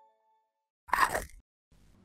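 A single crunchy bite sound effect, like biting into something crisp, about a second in, lasting about half a second. It comes just after the last notes of a jingle fade out.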